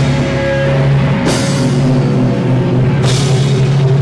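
Live rock band playing loud: electric guitar and drum kit, with crash cymbals hit about a second in and again near three seconds.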